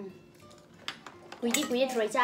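Cutlery clinking against dishes, with two short sharp clinks about a second in.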